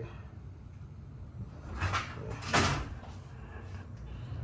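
A sliding glass door moving in its track: two short swishing scrapes, about two seconds in and again half a second later, over a steady low hum.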